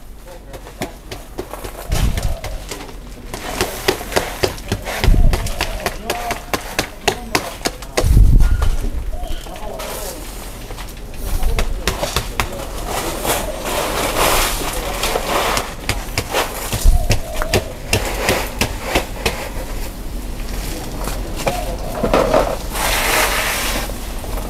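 Coarse sand being scooped and spread by hand over the soil in a large plant pot: scattered gritty scrapes and crackles, with louder bursts of grainy rustling about halfway through and near the end.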